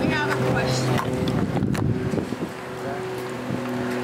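A steady engine drone, a low hum that holds one even pitch, with faint voices and wind around it.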